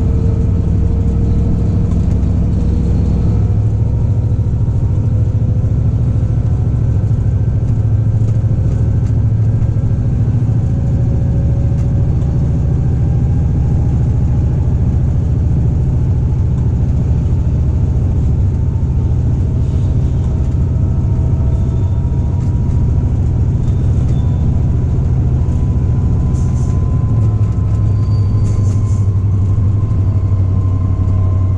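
Diesel engine of a DB class 294 diesel-hydraulic locomotive running steadily, a deep drone with faint slowly gliding whines above it. Its note shifts about three and a half seconds in and again near the end, where faint high squeaks are also heard.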